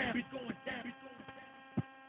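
Steady electrical hum with a buzzy edge. Faint voice-like sounds trail off during the first second, and a single short knock comes near the end.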